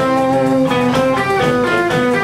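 Band music with guitar playing, a melody of held notes that changes pitch several times a second at a steady loudness.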